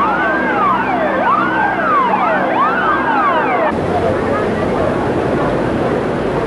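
Several police car sirens wailing together, each rising and falling about once a second. They cut off abruptly a little over halfway through, leaving an even, noisy background.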